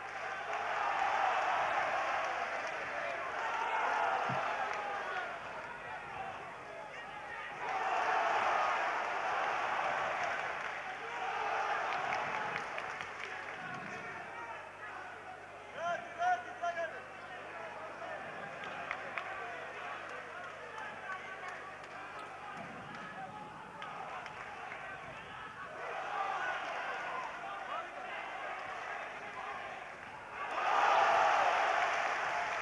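Boxing arena crowd noise: a mass of spectators' voices shouting and calling out, swelling and fading in waves, with a few sharp shouts about halfway through. A faint steady low hum runs underneath.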